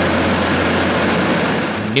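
Steady drone of an aircraft's engines as heard aboard it: a low hum under an even rushing noise.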